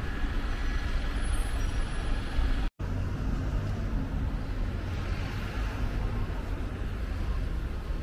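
Steady low rumble of city traffic noise, breaking off for a moment just under three seconds in.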